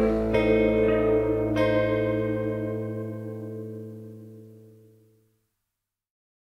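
Final chord of a rock song, played on guitar, ringing out and slowly fading, with one more strum about a second and a half in. It dies away to silence about five seconds in.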